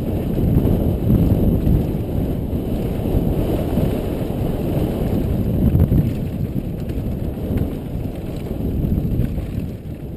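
Wind buffeting the microphone of a helmet-mounted camera on a mountain bike riding fast downhill, a loud gusty rumble, mixed with the knobby tyres rolling over dry dirt and a few light clicks from the bike.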